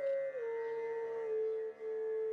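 Bansuri flute holding a long note that slides down a step about half a second in and is then sustained, over steady background drone tones.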